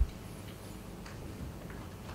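Quiet hall room tone, a steady low hum and hiss, with a few faint ticks and knocks as a man rises from a chair and steps away from a table.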